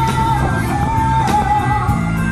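Live pop-rock band playing: a woman's voice holds two long high notes, the second wavering, over electric guitar, bass and a steady drum beat.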